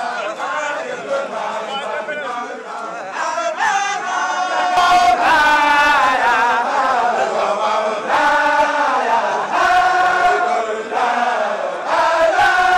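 A group of men chanting together in unison, a repeated religious chant sung in long held phrases. It grows fuller and louder about a third of the way through.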